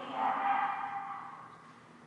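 Dog whining once: a high, held note that peaks in the first second and fades away.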